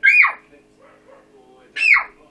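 Two short, high yelps about a second and a half apart, each sliding quickly down in pitch, over a steady low hum.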